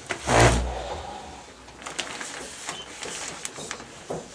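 A piano bench being set up for a child at a grand piano: one heavy low thump about half a second in, then scattered light clicks and knocks.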